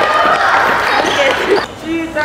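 Children cheering and shouting in a large hall, with thuds on the court floor; the noise breaks off sharply about a second and a half in.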